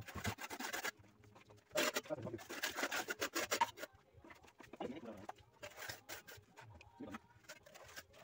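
Shovel scraping and crunching into a pile of crushed-stone gravel, in several bursts of rattling, the longest from about two seconds in to near four seconds.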